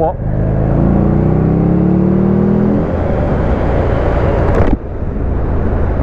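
Buell XB12X's air-cooled V-twin accelerating, its pitch rising steadily for about three seconds before the throttle is closed. A rushing wind noise carries on after it and drops away suddenly near the end.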